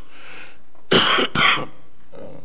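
A person coughing, two sharp coughs in quick succession about a second in.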